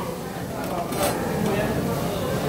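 Busy restaurant room noise with a few light clinks of metal serving tongs against stainless steel buffet pans.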